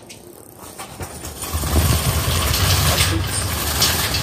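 Shopping cart pushed quickly across a hard store floor, its wheels rumbling and rattling, growing much louder about a second and a half in.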